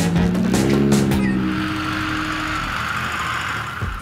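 A car engine revving under load with tyres scrabbling and spraying loose dirt, over background music. The engine note rises in the first second or so and fades after about two and a half seconds, while the dirt-and-tyre hiss carries on to the end.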